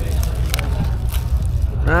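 Plastic wrapping and the foil lid of a takeaway meal tray crinkling as it is unwrapped, with a few sharp crackles, over a steady low rumble.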